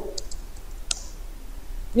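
A few separate keystrokes on a computer keyboard, typed as text is entered, over a low steady hum.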